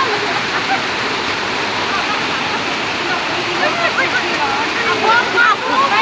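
Heavy rain pouring steadily, with water running across the street. Voices are heard over it, growing more frequent in the second half.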